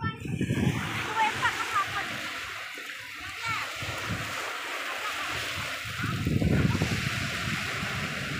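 Small sea waves washing and splashing onto a sandy, rocky shore: a steady rushing sound that swells twice, with faint voices.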